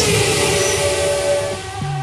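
A short music sting for a section change: a falling whoosh over a dense, airy noise wash with a held tone, slowly fading.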